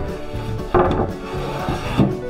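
A pine furniture board being laid onto a timber stud frame: wood rubbing against wood, with a knock a little under a second in, over background music.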